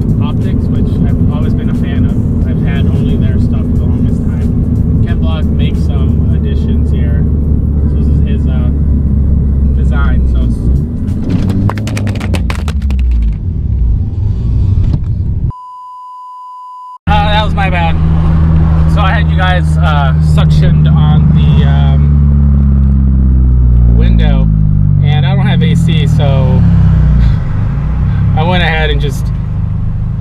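Car engine running in the cabin under music with a singing voice. About fifteen seconds in, everything cuts to a steady test-card tone for about a second and a half. Then the engine rises steadily in pitch as the car accelerates, and eases off near the end.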